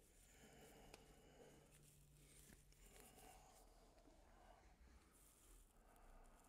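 Near silence: faint room tone, with a faint low hum for the first few seconds and a couple of faint ticks.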